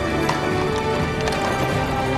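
Film score music with sustained notes, over the clip-clop of horses' hooves on a street.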